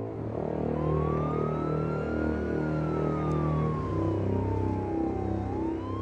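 Police car siren wailing. Its pitch climbs for about two seconds, falls slowly for about three, then starts climbing again near the end, over low sustained background music.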